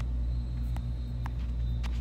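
A steady low hum or rumble, with a few faint clicks about a second apart.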